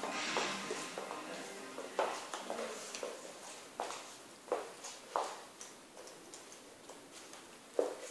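Hairdressing scissors and comb working through wet hair, making a scattering of soft clicks and snips.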